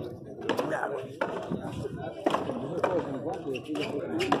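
A pelota ball being hit by hand and smacking against the frontón wall during a rally, as several sharp smacks about a second apart. Voices talk over the play throughout.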